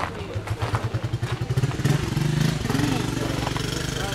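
Toyota Coaster minibus engine idling, a steady low throb that grows louder over the first two seconds, with faint voices around it.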